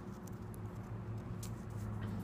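Steady low electrical-type hum, with a few faint clicks from fingers handling the cigar close to the phone's microphone.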